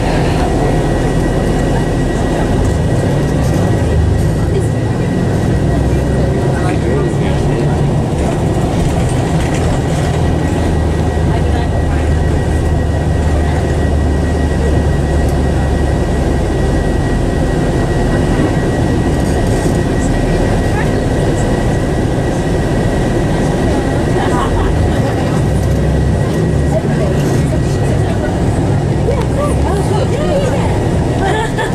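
Interior noise of a moving coach: steady diesel engine drone and road noise heard from inside the passenger cabin, with a faint steady high whine above it. The low engine drone grows stronger for several seconds in the middle.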